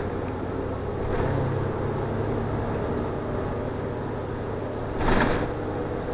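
City transit bus running, heard from inside the cabin: a steady engine drone with a low hum that picks up about a second in. A brief louder rush of noise comes about five seconds in.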